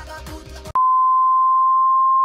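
An edited-in bleep: one steady, single-pitched beep tone that starts abruptly under a second in and holds unchanged, with all other sound cut out beneath it.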